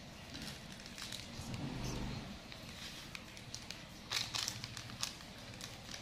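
Faint crinkling and rustling of plastic-foil instant-noodle seasoning sachets being cut open with scissors and handled, with a cluster of sharper crinkles about four seconds in.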